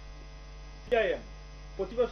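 Steady low electrical mains hum in the audio feed, with one short spoken syllable from a man about a second in.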